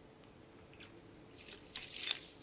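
Faint rustling and small crackles of Christmas tree branches being handled, beginning about halfway through; otherwise nearly quiet.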